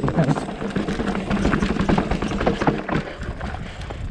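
Ibis Ripley 29er mountain bike rolling down a rocky dirt trail: tyres crunching over loose gravel and stones, with many quick rattles and knocks from the bike over the bumps, under a steady rumble of wind on the microphone.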